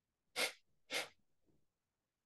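Two short, forceful nasal exhalations of kapalbhati breathing, about half a second apart.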